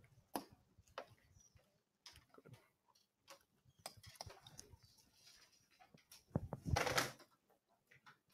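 Faint room sound with scattered small clicks and knocks, then a brief louder, noisy sound lasting under a second near the end.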